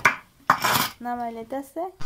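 A metal spoon clinking and then scraping against a stainless steel bowl, the loudest part about half a second in. Two short steady-pitched calls follow in the second half.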